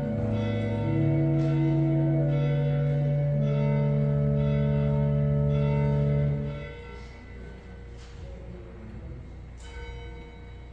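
Sustained organ chords, held notes changing every second or so, that stop abruptly about two-thirds of the way through, leaving a quieter room with a few faint clicks.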